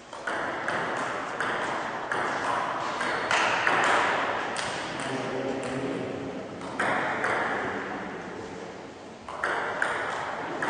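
Table tennis rally: the ball clicking off bats and table about twice a second, echoing in a large gym hall. The hits stop about seven seconds in, and a new rally starts near the end.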